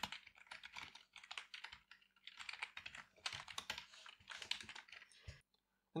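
Fast typing on a computer keyboard: a dense run of quick key clicks that stops shortly before the end.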